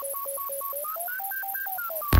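Electro house remix: a bleepy, pure-toned synth riff hopping back and forth an octave, about five notes a second, then climbing higher, over a ticking hi-hat, with the kick drum dropped out.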